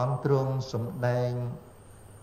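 A man's voice chanting in a level, drawn-out tone. It stops about one and a half seconds in, leaving a faint room hum.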